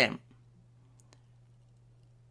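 A spoken word trails off at the start, then a quiet pause with a steady low electrical hum and two faint clicks about a second in, a fraction of a second apart.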